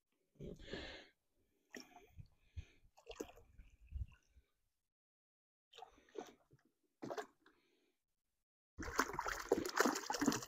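Water poured from a plastic gallon jug into a bucket of sugar syrup: a few faint splashes and knocks at first, then from about nine seconds in a steady gurgling pour.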